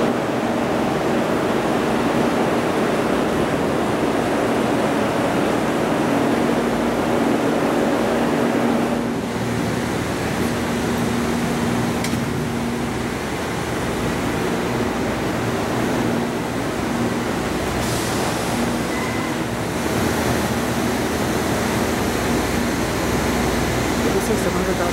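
Steady rushing of water mixed with the drone of ventilation machinery, carrying a low steady hum, inside a large glass greenhouse enclosure. The sound changes character about nine seconds in.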